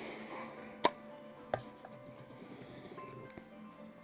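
Two sharp clicks, the first a little under a second in and the second about half a second later, as a jar of Saphir Rénovateur leather cream is opened, over faint background music.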